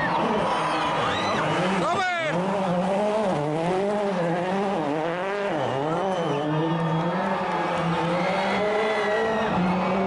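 Ford Fiesta RS WRC rally car's 1.6-litre turbocharged four-cylinder engine revving up and down as the car circles a roundabout, with a sharp rise in revs about two seconds in.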